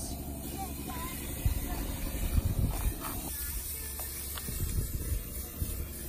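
Aerosol spray paint can hissing as it sprays paint onto a PVC pipe, with wind buffeting the microphone in gusts.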